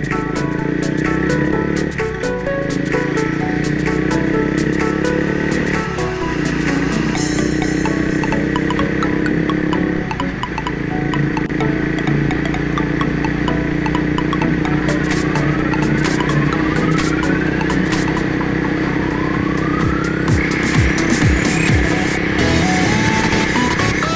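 Background music with sustained, shifting notes and a few rising sweeps in the second half.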